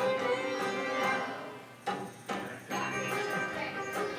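School chorus song with a young girl soloist singing over instrumental accompaniment. The music dips briefly about halfway, then comes back with a few sharp accents.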